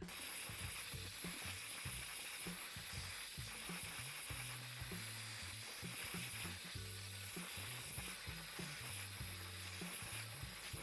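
Hair dryer blowing steadily while drying wet hair, over background music with a stepping bass line.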